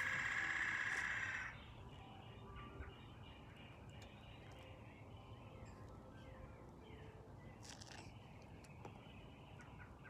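A steady high tone with overtones for about the first second and a half, then cutting off; after it, faint outdoor ambience with scattered bird chirps.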